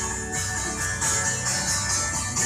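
Congregational worship song: a group singing to instrumental accompaniment, with a tambourine jingling in a steady beat.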